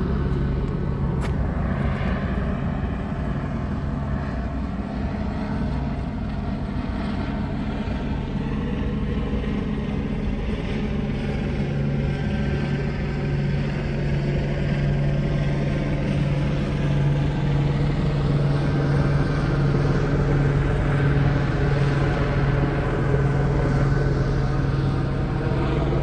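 Police helicopter circling overhead: a steady drone of rotor and engine that slowly shifts in pitch and grows a little louder partway through.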